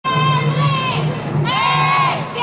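Children chanting long, high, drawn-out shouted calls in unison, with a crowd around them. One call holds, breaks off about halfway, and a new one slides in.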